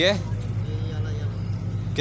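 An engine running steadily, making a low, even hum.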